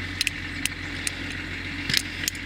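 A car engine idling steadily, with scattered light clicks and rattles over it, one sharper click near the end.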